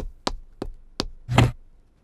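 Knuckles knocking on a car's sheet-metal bonnet: four sharp knocks about a third of a second apart, then a longer, duller one.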